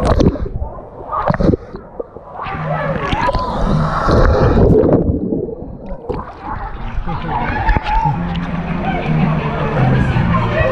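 Water sloshing and splashing against an action camera held at the surface of a water-park river, with gurgling. The sound goes dull for a moment twice, about two seconds in and again after five seconds, as the camera dips under the water.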